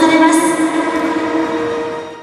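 Echoing stadium public-address sound held as steady sustained tones, fading away through the second half.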